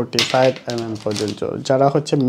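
A man talking in Bengali, with the crinkle and clicking of plastic-packaged watch straps being handled under his voice.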